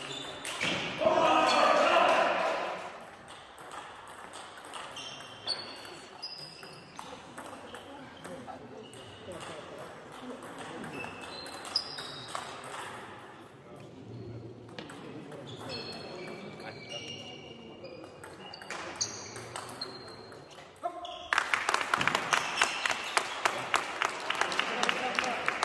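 Table tennis ball clicking off paddles and table in a fast rally that starts about 21 seconds in. Before that come a few single ball bounces between points, with scattered short high squeaks in a large hall.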